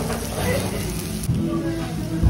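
Pork belly sizzling on a tabletop grill plate, with people talking around it. About a second in, background music starts.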